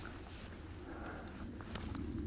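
Faint water splashing from a hooked brown trout thrashing at the river's surface, over a steady low rumble.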